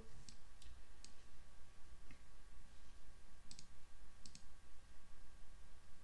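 A few light clicks of computer input, scattered and some in quick pairs, as a desktop is worked by mouse and keys. Under them runs a faint steady electrical hum.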